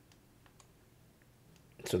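A few faint clicks in the first second from the Samsung Galaxy Z Fold 7's side button being pressed, which locks the screen. A man's voice starts near the end.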